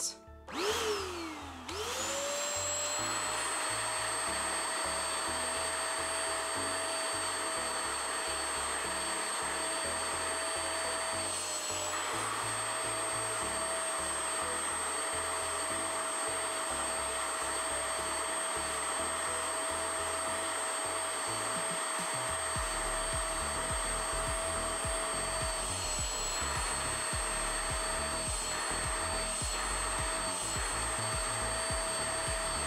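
Anko spot cleaner's suction motor starts up with a quick rising whine about two seconds in, then runs steadily as its hand nozzle sucks at a marker stain in carpet. Its pitch dips briefly twice.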